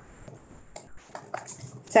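Quiet room tone with a handful of soft, irregular clicks and taps in the second half.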